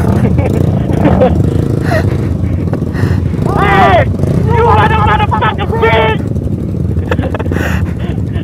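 Motorcycle engine running steadily at low speed, heard from the rider's own bike, with a voice calling out twice in the middle.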